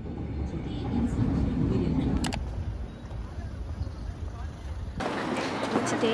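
City street sound: a steady low rumble of road traffic with indistinct voices of passers-by and a brief click a couple of seconds in. About five seconds in, the sound cuts to a brighter, noisier street scene, with a voice starting near the end.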